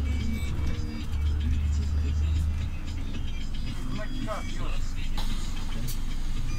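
Steady low rumble of a city bus's engine and road noise heard from inside the passenger cabin, strongest in the first half, with short snatches of a man's voice and some music over it.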